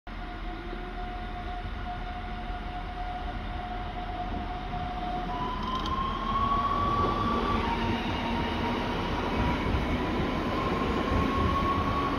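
Electric multiple unit EN64 pulling away: an electric traction whine holds one steady tone, then about five seconds in steps up to higher tones that slowly rise in pitch as the train gathers speed. Underneath is a low rumble that grows louder.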